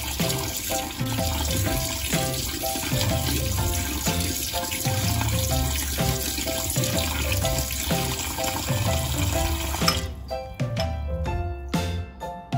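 Kitchen tap water running steadily into a colander of beef liver as the liver is rinsed and stirred, under background music. The water stops about ten seconds in, leaving only the music.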